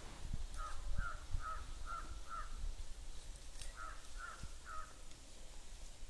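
A bird calling in short repeated notes: a run of five, a pause of about a second, then three more.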